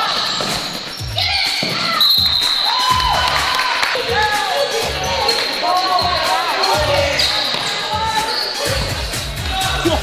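Basketball game on a hardwood gym floor: a ball being dribbled in repeated thumps, with many short sneaker squeaks from players on the court, echoing in a large gym.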